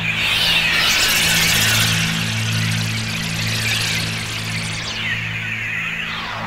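ReFX Nexus 4 'Ambient Textures 02' atmosphere synth preset being played: held low notes under a wavering, airy high texture. The texture swells in at the start and thins out about five seconds in.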